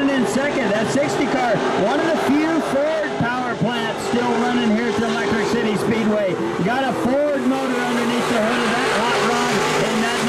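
Several IMCA Modified dirt-track race cars' V8 engines running hard around the oval, their pitch rising and falling over and over as the cars accelerate, lift for the corners and pass by.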